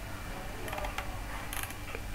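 Computer mouse scroll wheel ratcheting in a few short runs of quiet clicks, a cluster of them about one and a half seconds in, over a low steady hum.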